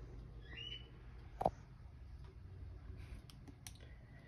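Computer mouse clicking: one sharp click about one and a half seconds in, then a few fainter clicks near the end, over a low steady hum.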